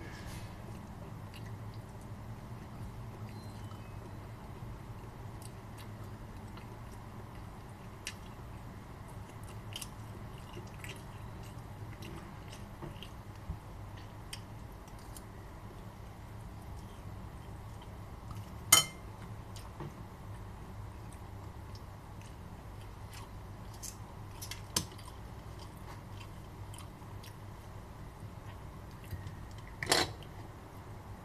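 A person chewing food and eating with a fork from a bowl, with scattered small clicks over a steady low hum. One sharp click stands out about two-thirds of the way through, and a smaller one follows some seconds later.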